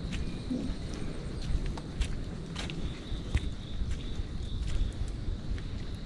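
Barefoot footsteps on a dirt jungle path, uneven steps with light crackles of dry leaves and twigs underfoot, over a steady low rumble. A faint steady high tone runs underneath.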